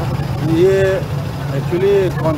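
A large dump truck's diesel engine running steadily close by, a continuous low rumble under brief bits of a man's speech.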